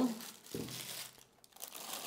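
Plastic bags crinkling as plastic-wrapped speaker accessories are handled and set down on a table, in irregular rustles.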